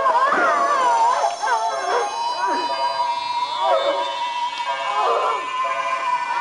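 A Cryon's high wailing cries in distress, in short bursts that swoop up and down in pitch, over a steady high electronic tone that comes in about two seconds in.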